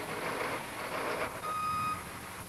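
Dump truck with a sander hopper running as it backs up, its backup alarm sounding one steady, high beep near the end.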